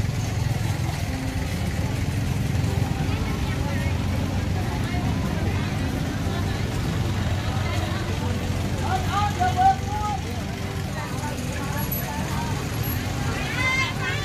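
Busy open-air market ambience: indistinct chatter of vendors and shoppers over a steady low rumble. One voice stands out briefly about nine seconds in, and another near the end.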